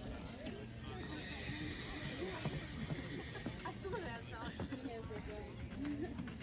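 A horse whinnying, with wavering high calls in the middle, over the muffled hoofbeats of a horse cantering on sand arena footing.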